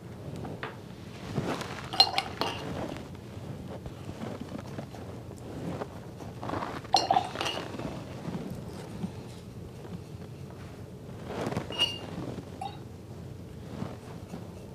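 Light clinks of paintbrushes against hard painting ware, water jars and palettes: three clinks a few seconds apart, each with a brief ring.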